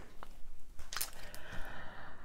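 Tarot card deck being handled and shuffled by hand: a few soft clicks, a sharper tap about a second in, then a brief papery rustle of cards.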